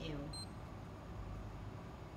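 A single short, high electronic beep from a touchscreen coffee vending machine as a selection is pressed, over a steady low hum.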